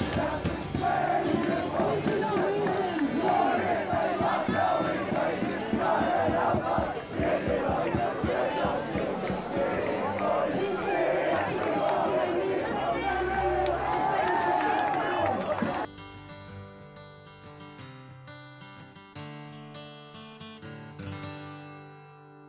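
A large crowd of teenage boys shouting and chanting together, with music underneath. The voices cut off suddenly about three-quarters of the way through, leaving soft guitar notes.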